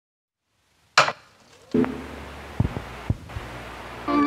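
A sharp knock about a second in, then a few duller knocks over a faint low hum.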